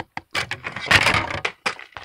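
Sharp knocks and clicks of a small dollar-store drawer unit being handled and set down against books, with a brief noisy clatter about a second in.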